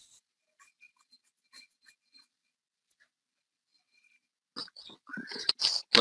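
Near silence on a video call, with a few faint short ticks in the first two seconds. A voice starts speaking about five seconds in.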